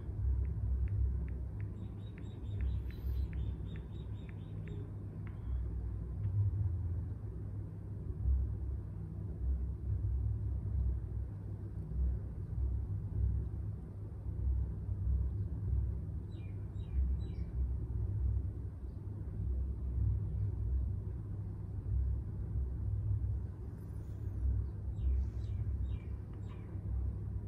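iPhone on-screen keyboard clicks as a password is typed: a quick run of short ticks in the first five seconds, with a few more ticks later. Throughout, a steady low rumble is louder than the clicks.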